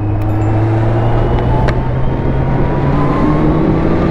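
Sport motorcycle engine running while riding in traffic. Its pitch rises slowly as the bike gathers speed, under steady rushing wind and road noise. A single sharp click comes about a second and a half in.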